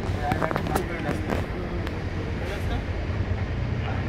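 Steady low rumble of a moving bus's engine and road noise heard inside the passenger cabin, with indistinct voices and a few light rattles in the first couple of seconds.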